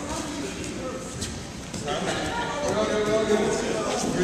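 Group of students talking and calling out over one another in a large gym hall during a team relay race, with a few light knocks from bodies on the floor mats. The voices grow louder about halfway through.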